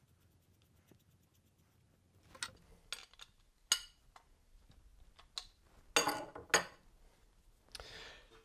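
A wrench and the metal parts of a high-pressure air compressor clinking and knocking as its filter cylinder is put back together. After a quiet start there are several short, sharp clinks from about two seconds in, the loudest pair near the end.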